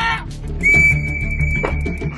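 A whistle blown in one long, steady blast that starts about half a second in and holds at a single high pitch, over background music.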